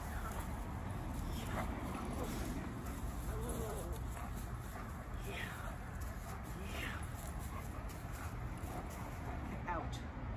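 German Shepherd giving a few short, high whines and yips that fall in pitch, excited during a game of tug-of-war, over a steady low background rumble.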